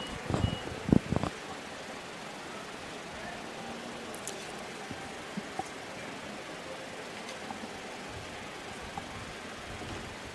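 Faint, steady outdoor ballpark ambience between pitches, with a few short voice sounds in the first second or so and a couple of small ticks later.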